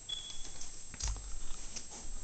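Handling noise and footsteps from someone walking with a handheld camera. A brief, thin, high squeak comes near the start, then a dull thump about a second in and a few light knocks.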